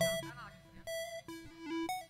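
A live band's instrument playing a short run of soft single notes, one after another, stepping between higher and lower pitches.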